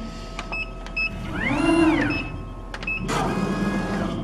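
Laser cutter's stepper motors driving the gantry after a reset, homing toward the limit switches. A whine climbs and then falls in pitch as the head speeds up and slows down, a second move starts its climb near the end, and a few sharp clicks come before it.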